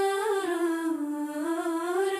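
A voice humming a slow, wordless melody: one long held note that slides down to a lower note and climbs partway back up.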